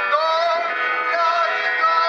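Live band music: a male voice singing sustained notes that glide between pitches, backed by the band's electric instruments.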